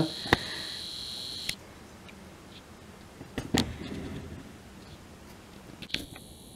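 Camcorder zoom motor whining at one steady high pitch for about the first one and a half seconds while the lens zooms in. Then only faint handling noise, with a single light click about three and a half seconds in.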